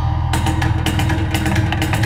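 Improvised avant-garde solo guitar music: a sustained low drone under quick, irregular percussive strikes on the instrument.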